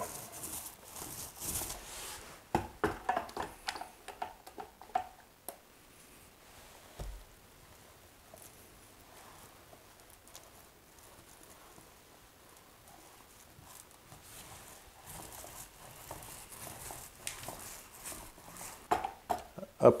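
Paint roller working thick Laticrete Hydro Ban liquid waterproofing membrane onto a shower wall: quiet, intermittent soft clicks and scrapes in the first few seconds, a stretch of near silence in the middle, and faint rolling sounds again near the end.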